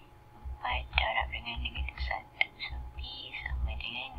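Soft, half-whispered speech: a person muttering under their breath.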